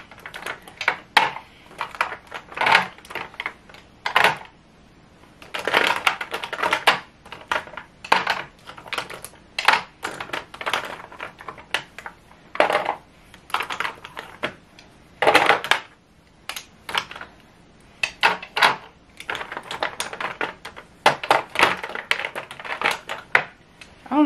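Plastic lip gloss tubes and lip product packages clicking and clacking against each other and against clear plastic organizer trays as they are picked up and set down by hand. The clicks come irregularly, in quick runs with short pauses.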